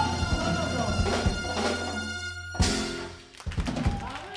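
Live Cuban band with a horn section, bass and drums holding a closing chord while the singer's voice wavers over it, then ending on one sharp hit about two and a half seconds in. A few claps start near the end.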